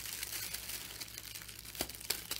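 Crinkling of iridescent plastic film as hands stretch a nylon bath-loofah net over a film-covered bowl, with one sharper tick near the end.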